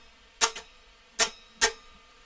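Three quick strums across the muted strings of an electric guitar, short percussive scratches at uneven intervals: the halting hand motion of a beginner who does not keep the strumming hand moving consistently.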